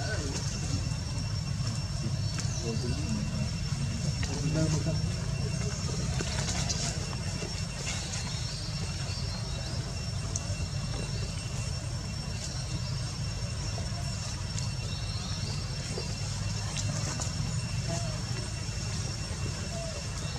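Outdoor ambience: a steady low rumble with faint, indistinct voices now and then, over two thin, steady high-pitched tones.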